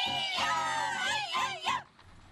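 Bećarac folk singing: a high voice sings a wavering, sliding line and cuts off suddenly just before the end.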